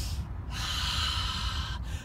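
A man's long, forceful breath through the mouth, starting about half a second in and lasting over a second, one of the deep breaths taken between Tibetan rites. A steady low background rumble runs underneath.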